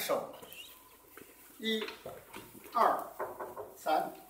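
A voice calling out counts in Mandarin, one short call about every second, setting the rhythm of the qigong form's steps.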